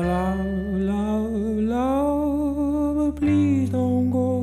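A song from a music playlist: a long held melodic note that slides upward about halfway through, over a steady bass line that shifts to a new note about three seconds in.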